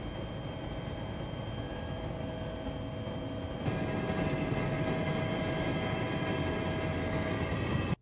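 Steady engine drone heard inside an aircraft cabin, a dense rumble with several constant tones over it. About three and a half seconds in it jumps a little louder with a slightly different pitch mix, and it cuts off abruptly at the end.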